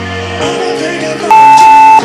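Background music with held notes, joined in the second half by a long steady electronic beep, the loudest sound, as the workout interval timer runs out.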